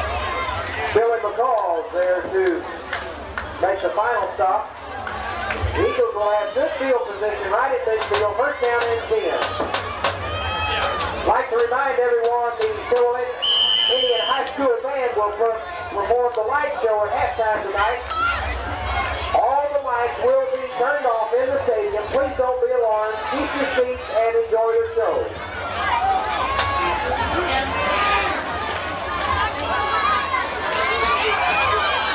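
Several voices chattering close to the microphone, the talk of people on a football sideline with no clear words, over a steady low hum. A short high whistle tone sounds about halfway through.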